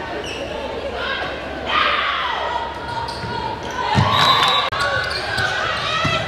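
Sounds of a basketball game in a gymnasium: voices shouting and calling out, and a basketball bouncing on the hardwood court, with a heavy thud about four seconds in and quick sharp knocks near the end.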